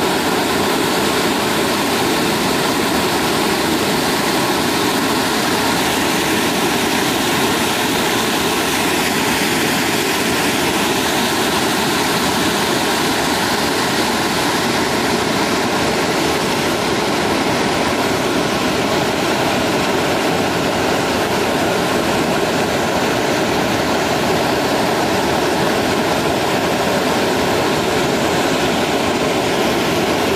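Waterfall: a loud, steady rush of falling water.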